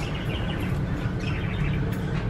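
Pet budgerigars chirping in their cage, a run of quick, short chirps.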